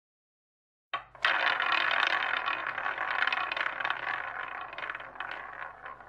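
Sudden dense rattling clatter of many small hard objects, like coins or chips tumbling. It starts about a second in and slowly fades away.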